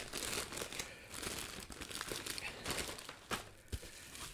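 Plastic packaging crinkling and tearing as a poly mailer bag is torn open and pulled away from a bubble-wrapped box. A few short sharp crackles come in the second half.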